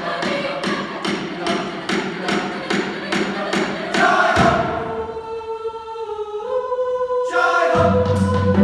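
Background choral music: a choir singing over a quick, even beat of about four hits a second, which gives way about four seconds in to long held chords that step up in pitch, with the beat returning near the end.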